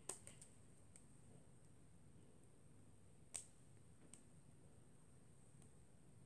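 Near silence with a few faint, sharp clicks, the loudest just after the start and another about three and a half seconds in: small rubber loom bands being stretched over fingers and snapping off them while weaving a fishtail bracelet by hand.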